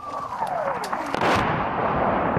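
Incoming shell whistling, falling steadily in pitch for about a second, then exploding with a sudden loud blast that rumbles on.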